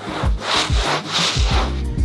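Stiff-bristled hand scrub brush scrubbing a wet, foamy wool rug in repeated back-and-forth strokes, with background music carrying a steady beat underneath.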